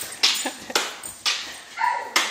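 Boxer dog barking repeatedly in play, about two barks a second, with a short high whine near the end.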